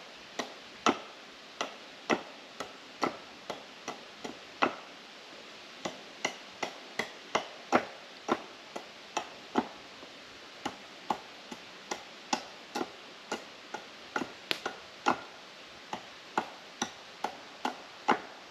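A hand tool striking a cedar log over and over: sharp, woody knocks about two a second, uneven in strength, with a short pause about five seconds in and another near ten seconds.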